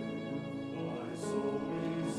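Mixed church choir singing an anthem with violin accompaniment, holding sustained chords on the word "alone."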